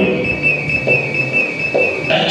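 Live experimental noise music: one steady, high whistle-like electronic tone held over a low, murky drone, cutting off suddenly at the end as a denser noisy texture comes in.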